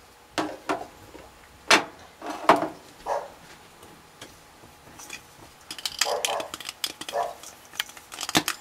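Kitchen utensils clicking and knocking around a ceramic fondue pot. A few separate sharp knocks come in the first three seconds, then a quicker run of clicks near the end.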